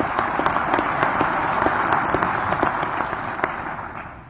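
Audience applauding: a dense patter of many hands clapping that dies away near the end.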